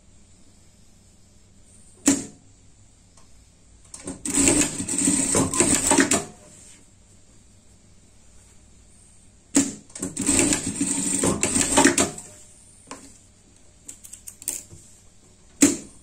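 Industrial straight-stitch sewing machine stitching fabric in two fast bursts of about two seconds each, several seconds apart. A sharp click comes about two seconds in and another near the end.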